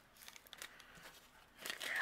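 Faint crinkling and rustling of a small plastic zipper bag handled between the fingers as it is closed, with a slightly louder rustle near the end.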